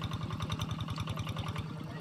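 A small engine running steadily with an even, rapid beat of about ten pulses a second.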